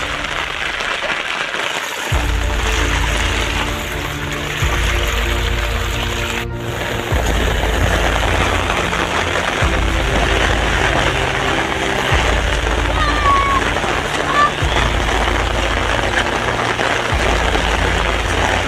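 Background music with a deep bass line that changes note every couple of seconds, coming in about two seconds in, over a steady hiss of rain.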